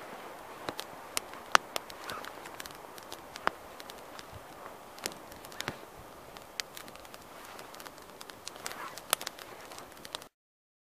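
Small fire of dry twig kindling burning, crackling with scattered, irregular sharp pops over a low hiss; the loudest pop comes about a second and a half in.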